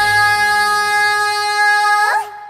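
Orchestra holding one long sustained note, with the low bass fading out just after the start.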